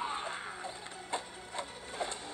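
A man groans in pain at the start. Then come two sharp hits, about a second in and half a second apart, over background music.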